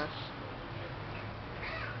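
A little girl's high-pitched squealing 'ah', sliding down in pitch, right at the start, then a short high squeak near the end, over a steady low hum.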